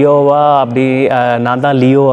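A man's voice close to a clip-on microphone, drawn out in two long, level-pitched stretches with a short break about two-thirds of a second in, so it sounds almost chanted.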